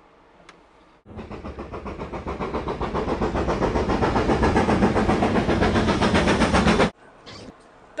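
Steam locomotive chuffing in a fast, even rhythm. It cuts in abruptly about a second in, grows louder, then stops sharply about a second before the end.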